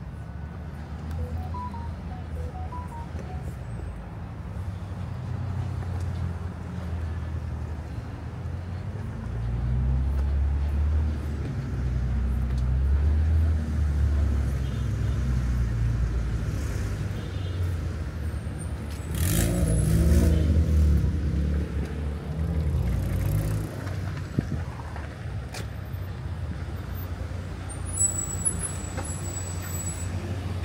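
City street traffic: car engines rumbling and tyres on the road as vehicles pass close by. It grows louder in the middle, and the loudest vehicle passes about two-thirds of the way in.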